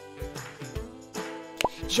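Soft background music with steady held notes, and a short plop sound effect with a quick upward pitch sweep near the end.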